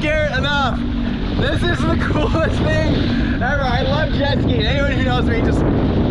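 Jet ski running at speed over open sea, with wind buffeting the microphone and water rushing, a steady dense rumble throughout.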